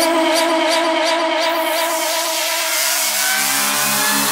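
Electronic dance music in a breakdown without drums: held synth chords under a rising noise sweep that grows brighter through the second half, building toward the drop.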